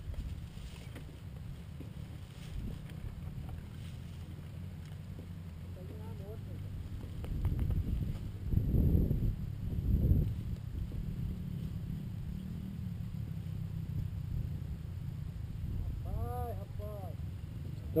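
Trail motorcycle engines idling with a steady low rumble, swelling twice into louder revs about eight and ten seconds in as the rider ahead works the throttle.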